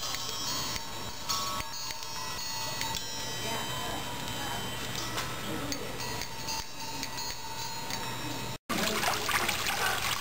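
Large hanging metal disc chimes ringing, several clear tones sounding and lingering together, with fresh strikes adding new tones. About eight and a half seconds in it cuts suddenly to water trickling over rocks.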